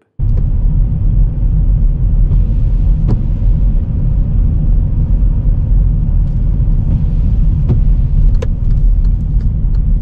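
Car interior noise while driving: a steady low rumble of tyres and engine heard from inside the cabin, with a few faint clicks.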